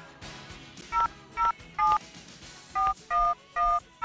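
Telephone keypad touch-tones (DTMF) dialing a number as a recorded sound effect: six short two-tone beeps in two groups of three, about half a second apart, with a pause between the groups.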